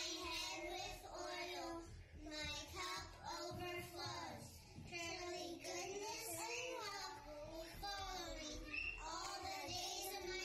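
Young children singing their memory work, in short phrases with held notes and brief pauses between them.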